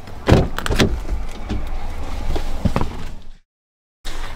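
Car door handle pulled and the door unlatched and opened: two sharp clicks or knocks within the first second, then a fainter click near three seconds, before the sound cuts off suddenly.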